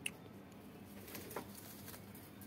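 Faint scattered taps and light scratching from domestic pigeons shifting their feet on a wire-mesh cage floor, with one short sharp click at the start.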